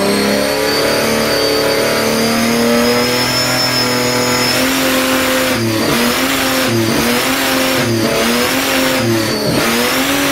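Supercharged Ford six-cylinder engine running on a dyno, held at fairly steady revs, then from about halfway the revs dip and pick back up about once a second.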